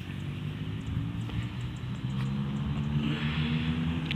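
An engine running with a steady low hum, growing a little louder and higher in pitch in the second half.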